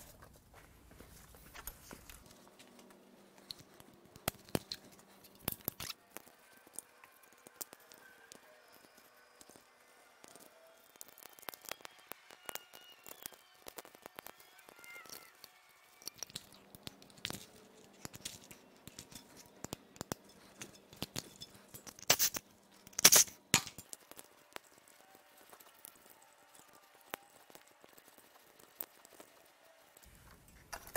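Scattered small clicks and snaps as plastic connectors and clips of an engine wiring harness are unfastened and the harness is pulled free, with a couple of louder snaps about three-quarters of the way through.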